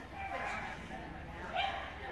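A dog barking, with a short, sharp yip about one and a half seconds in, over background voices.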